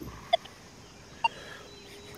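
Quiet outdoor background with two brief, faint chirps about a second apart, and a faint steady hum near the end.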